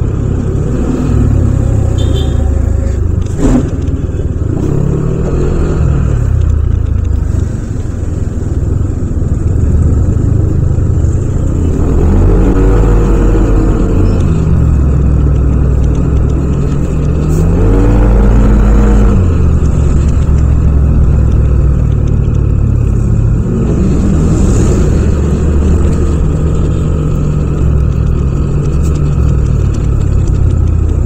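Yamaha Aerox 155 scooter's single-cylinder engine and CVT running in slow traffic. Its pitch rises and falls as it pulls away twice, about halfway through and again a few seconds later. There is one sharp knock a few seconds in.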